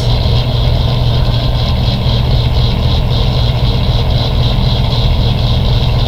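Steady, loud low machine hum with no change in pitch or level.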